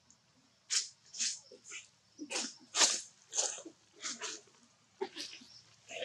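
A run of short, breathy monkey sounds, about a dozen in quick succession over a few seconds, the loudest near the middle.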